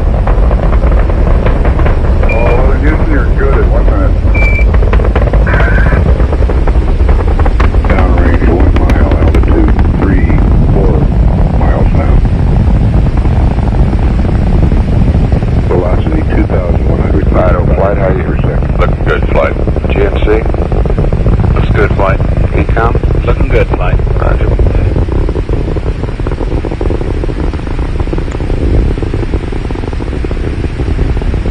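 Saturn V rocket's first-stage F-1 engines in flight, a loud, steady, deep rumble that eases off slightly near the end. Indistinct voices talk over it, and two short high beeps sound in the first few seconds.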